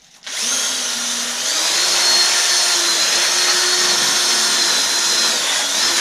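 A small handheld power tool, like a cordless drill, runs steadily at a bike's bottom bracket. It starts just after the beginning, its motor whine steps up slightly in pitch about a second and a half in, and it cuts off at the end.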